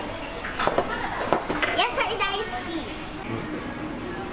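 Tableware clinking at a restaurant table: several short knocks of dishes and chopsticks, with voices, one of them a child's, among them.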